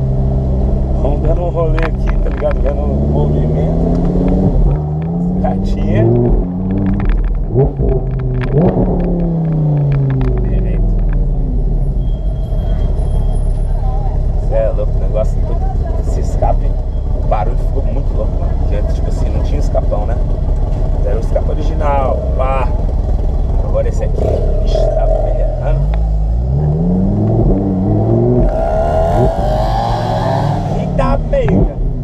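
Audi R8's mid-mounted engine running while the car drives, its pitch climbing and falling several times as it revs up and eases off, over a steady low rumble; it climbs again near the end.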